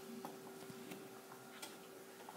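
Faint, scattered ticks of a stylus tapping and writing on an iPad's glass screen, over a steady faint hum.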